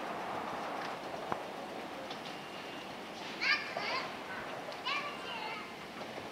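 Children's high voices calling out in two short bursts, about midway and near the end, over a steady hum of street ambience.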